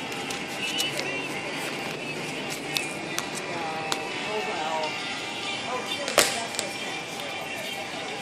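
Background music and the chatter of other people, with a few small clicks and one sharp knock about six seconds in.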